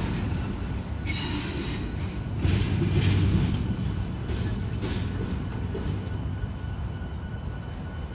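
Double-stack intermodal freight train rolling past: a steady low rumble of wheels on rail, with a brief high-pitched squeal about a second in, the sound slowly fading as the cars move away.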